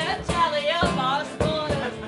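A woman singing a ballad live, with the melody moving from note to note and no clear words in this phrase.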